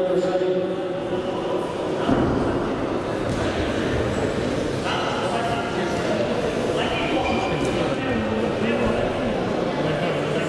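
Voices shouting in a large hall, with a louder, higher-pitched shout about five seconds in and another about seven seconds in.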